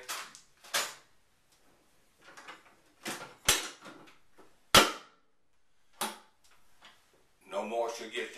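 Steel ammo can being shut: a food packet dropped in, then the hinged lid closing and the latch clamping it down to seal, heard as a series of sharp metal clunks and clicks, the loudest just before five seconds in.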